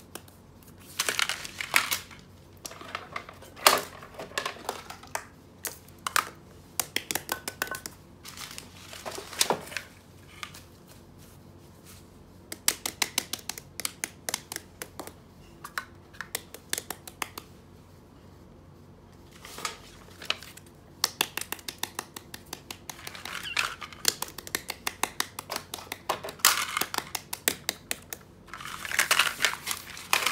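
Plastic bags crinkling and small toys being picked up, set down and tapped on a paper sheet, in quick runs of clicks and rustles, with a quieter stretch a little past halfway.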